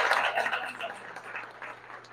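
Audience applause dying away, thinning to a few scattered claps.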